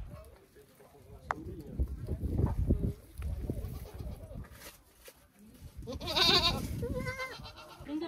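A goat bleating: a long wavering call about six seconds in, followed by a shorter one. A low rumbling noise comes a few seconds before it.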